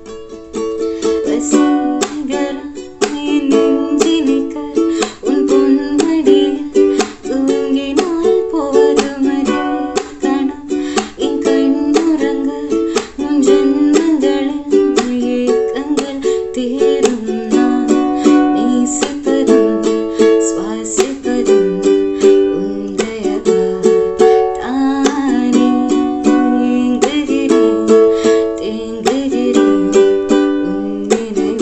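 Ukulele strummed in a steady rhythm of chords, with a woman singing along.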